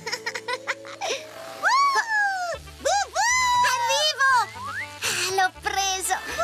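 A cartoon character's high, wordless vocal glides and giggles, rising and falling in pitch, over children's background music with a low bass line.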